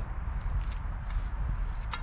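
Faint scraping and light knocks of a paintbrush wiping primer off a paint can lid, over a steady low rumble.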